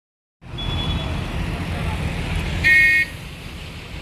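Low, steady rumble of stalled highway traffic, with one vehicle horn honk of about half a second near three seconds in, the loudest sound.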